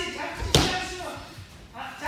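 A judoka thrown onto tatami mats during randori: one loud slap of a body landing on the mat about half a second in, with a short echo in the hall.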